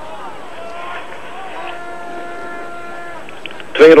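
Rink-side crowd noise with faint distant voices, and a steady held pitched tone from about half a second in that lasts about two and a half seconds.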